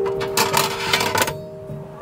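Metal parts of a Kovea All-in-One Mini Stove clinking and rattling as they are handled and taken apart, with a burst of clatter in the first second or so.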